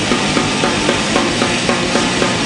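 Crust/d-beat hardcore punk recording: heavily distorted guitar and distorted bass playing a riff over fast, pounding drums.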